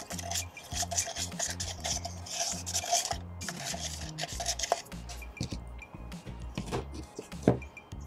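A plastic spoon scraping and stirring thick dental stone around a plastic cup for about three seconds, then a few light clicks and a single knock near the end. Low background music plays throughout.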